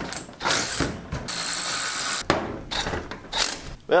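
Cordless drill/driver running in four short bursts, the longest about a second, backing out the bolts that hold a car bucket seat's steel track.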